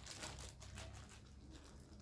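Faint crinkling of a small clear plastic bag being handled in the fingers.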